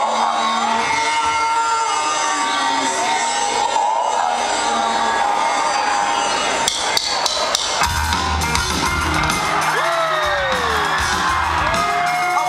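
A concert crowd cheering and whooping over intro music in a large hall. About seven seconds in, a run of sharp drum and cymbal hits comes in, and a heavy, bass-laden rock band starts playing.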